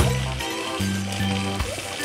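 Background music: a light tune over held bass notes that change every half second or so.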